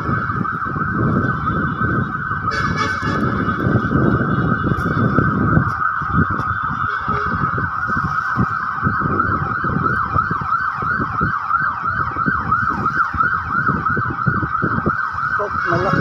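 A siren sounding without a break in a fast, repeating rising sweep, several sweeps a second, with wind buffeting the microphone underneath.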